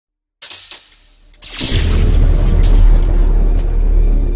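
Intro sound effects: a sudden hit about half a second in and a few quick sharp swishes, then a loud, sustained deep rumble with a rushing hiss on top from about a second and a half in.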